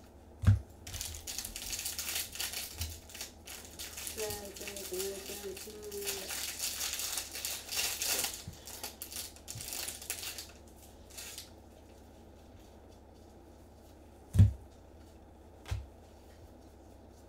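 Foil trading-card pack wrapper crinkled and torn open by gloved hands: a dense crackling that runs for about ten seconds and then stops. Dull thumps on the table sound once near the start and twice near the end.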